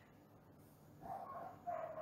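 A dog barking faintly, starting about a second in.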